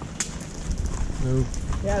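Riding horses walking past on a dirt trail, their hooves thudding steadily, with a sharp click about a fifth of a second in.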